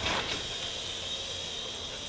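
Remote-control toy helicopter's small electric motor and rotor whirring with a steady high whine, with a brief knock or rustle right at the start.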